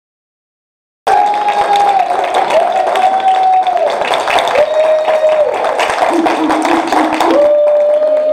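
Audience clapping and cheering, starting suddenly about a second in, with long held vocal cheers sustained over the dense clapping.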